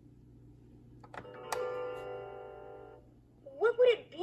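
A plastic button clicks about a second in, then the Fisher-Price Little People Songs & Sounds Camper's electronic speaker plays a bright chime that rings and fades. A recorded character voice starts near the end.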